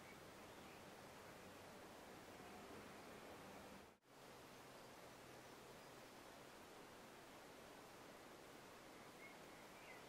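Near silence: faint, steady room hiss, dropping out for an instant about four seconds in.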